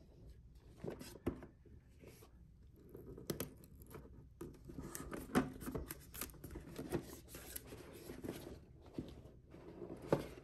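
Cardboard packaging being opened by hand: a sealed box is broken open and slid out of its paper sleeve, with faint rustling and scraping and scattered sharp clicks.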